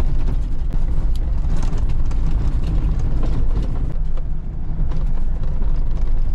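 Cabin noise of a diesel Jeep Wrangler driving over desert dirt: a steady low rumble of engine and tyres, with frequent small rattles and knocks from the bumps.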